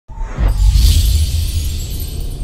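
Logo intro music sting: a deep bass rumble with a high whoosh that swells and fades about a second in.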